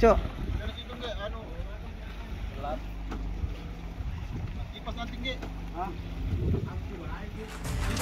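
Steady low hum of a fishing boat's machinery, with faint voices of people on deck now and then.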